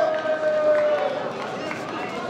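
Long, drawn-out shouts from spectators cheering on taekwondo fighters, fading out about a second in, over crowd chatter. Near the end come a couple of sharp slaps from feet and kicks on the mat.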